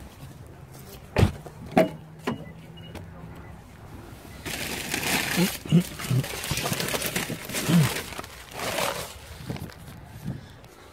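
A car door being handled: three sharp clicks and knocks within about a second and a half, followed by a few seconds of rustling handling noise and a cough.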